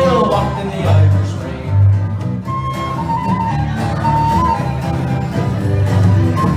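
Live folk band playing an instrumental passage: strummed acoustic guitar and electric bass under a fiddle melody, with heavy bass notes about one and two seconds in.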